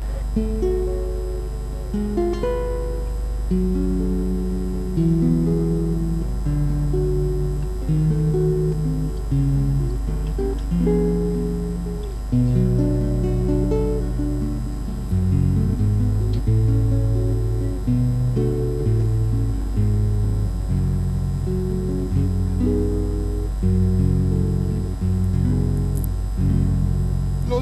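Solo acoustic guitar, fingerpicked: a melody of single plucked notes over bass notes, with the bass growing stronger about halfway through. It is the instrumental introduction to a folk song, before the voice comes in.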